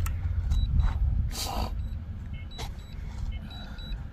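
Wind buffeting the microphone in open ground: a gusty low rumble that eases after about a second and a half, with a couple of brief rustles.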